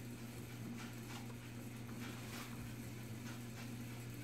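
Faint, soft rustles and dabs of a crumpled paper towel on a freshly painted wooden board, over a steady low electrical hum.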